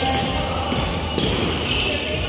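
Basketball game on an indoor court: the ball bouncing on the floor while players run, with voices calling out over a steady low hum.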